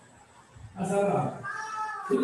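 A man's voice through a microphone, quiet at first, then a high, drawn-out utterance from a little under a second in that rises in pitch near the end.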